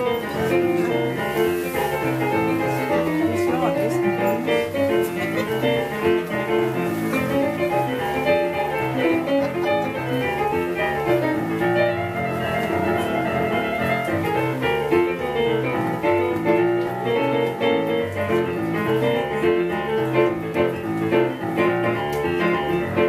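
Boogie-woogie blues piano played on a Yamaha digital stage piano: a steady rolling left-hand bass figure under right-hand chords and runs.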